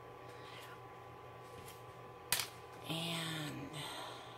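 Quiet room with a faint steady hum, broken by one sharp click of plastic being handled a little past two seconds in, then light plastic rustling under a short spoken word near the end.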